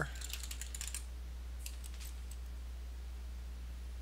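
Computer keyboard typing a short command: a quick run of keystrokes in the first second, then a few single key presses a little later, over a steady low hum.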